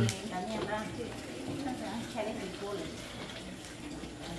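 Quiet background talk of several women's voices, low and indistinct, with no other distinct sound standing out.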